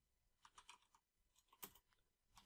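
Computer keyboard being typed on: faint, quick keystrokes in a run about half a second in and another near the end.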